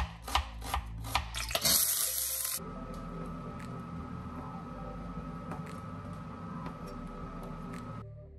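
Kitchen knife chopping a red onion on a wooden cutting board: a quick run of about five sharp strokes, followed by a short, loud hiss of about a second. After that a steady hum with a thin steady whine runs on under a few soft knife taps.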